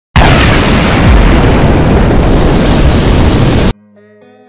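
A very loud, dense rush of noise, heaviest in the low end, that starts abruptly just after the start and cuts off suddenly about three and a half seconds later.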